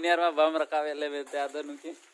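Speech: a person talking, stopping near the end.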